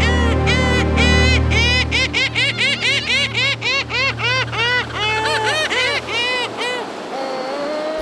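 Lava gull calling in a rapid string of short rising-and-falling notes, several a second, thinning out into a few longer drawn-out notes in the last few seconds. A low music drone runs underneath and fades out a little past six seconds in.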